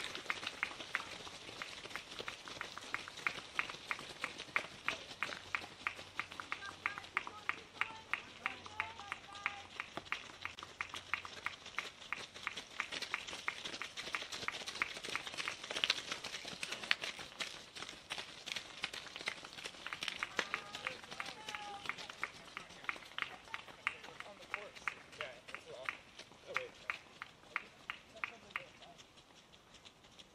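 Cross-country runners' footsteps on a gravel path, a quick, even patter of about three to four footfalls a second as runners pass one after another, fading out near the end.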